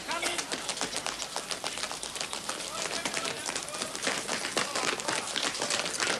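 Several people running in army boots on a station platform: a rapid, irregular clatter of many footsteps.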